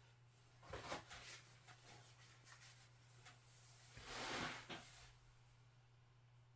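Near silence over a low steady hum, with a few faint knocks about a second in and a soft rustle about four seconds in, as of small items being handled off camera.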